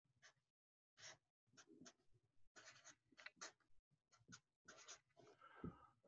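Felt-tip marker writing on paper: a run of faint, short scratchy strokes, one after another, with a soft thump near the end.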